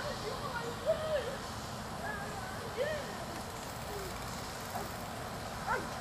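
Distant, unintelligible voices calling out now and then over a steady outdoor background hiss.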